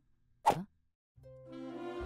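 A single short cartoon pop sound effect about half a second in. After a brief pause, background music fades in and grows.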